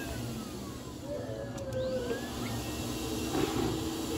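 Teddy-bear stuffing machine's blower motor running with a steady hum, blowing fibre fill into a plush toy skin held on its nozzle.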